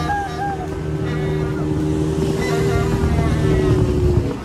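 Motorboat engine running steadily while the boat is under way, a constant low rumble with a steady hum above it.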